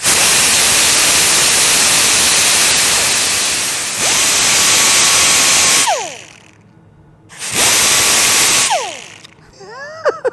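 Die grinder with a small abrasive disc grinding the anodized coating off a small metal fitting: about four seconds of grinding noise, then the free-running whine as it comes off the work, winding down about six seconds in. A second, shorter burst starts about a second and a half later and winds down again near the end.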